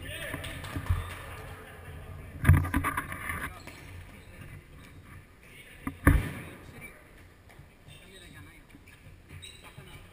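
A futsal ball being kicked and bouncing on a hard indoor court, with players' voices calling out. Sharp thuds come about a second in, at two and a half seconds (the loudest), and just after six seconds.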